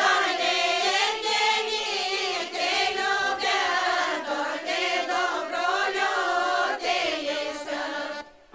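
Bulgarian women's folk group singing together in the traditional Dobrudzha village style, several voices carrying one wavering melody line with held notes.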